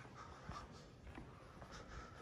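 Near silence: quiet room tone with a few faint soft ticks.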